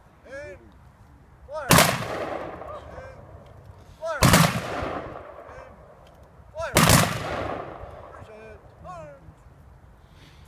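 Three rifle volleys fired by a funeral firing party as a three-volley salute, about two and a half seconds apart, each a sharp crack that echoes away over a second or two.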